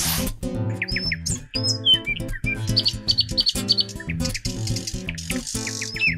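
Bird chirping and short high whistled calls, with a quick run of chirps about three seconds in, over background acoustic guitar music.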